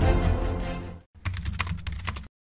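Music fading out over the first second, then after a brief gap a quick run of computer-keyboard typing clicks, a typing sound effect.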